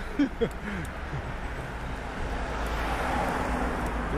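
Road traffic: a motor vehicle approaching on the road, its engine and tyre noise growing louder over the last two seconds.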